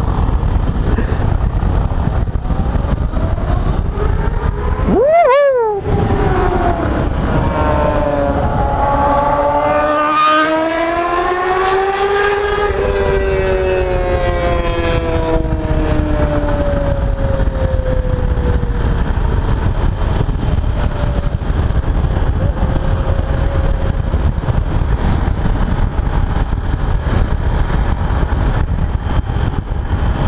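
Yamaha XTZ 250 Ténéré's single-cylinder engine heard from the rider's seat over a steady low riding rumble. About five seconds in the engine note rises sharply and drops out for a moment; from about eight seconds it climbs in pitch under acceleration, peaks around twelve seconds, then falls away slowly as the bike eases off.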